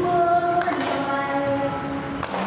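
Voices singing a slow Buddhist devotional melody in unison, each note held for about half a second to a second before stepping to a new pitch.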